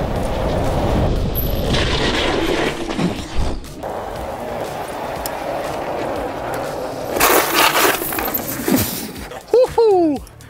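E-bike with Bosch ABS being ridden hard along a carpeted indoor test track: steady rumbling tyre and wind noise, then a harsh rasping burst lasting about a second around seven seconds in. A man's exclamation comes near the end.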